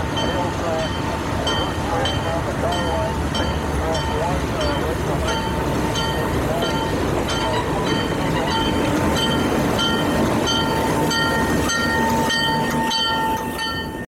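Alco RS-5 diesel locomotive rolling past close by, its engine running with a steady low rumble while its bell rings at about two to three strokes a second.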